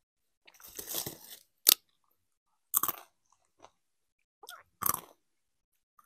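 Doritos tortilla chips being bitten and chewed close to the microphone: a spell of crackly chewing, then a run of sharp, separate crunches about a second apart.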